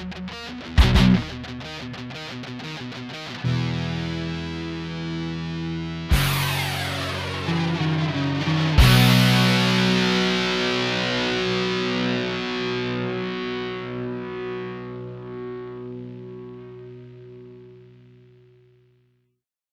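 Punk rock with distorted electric guitar: a few sharp accented hits, then sustained chords, struck again about six and nine seconds in. The last chord is left to ring and fades out near the end.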